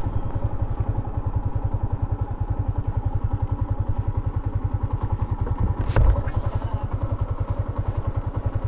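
Yamaha Sniper 150's single-cylinder four-stroke engine running at low revs as the motorcycle rolls slowly, its exhaust pulsing evenly. A single sharp knock comes about six seconds in.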